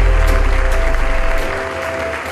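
Audience applauding over background music, with a deep bass note that fades out about one and a half seconds in.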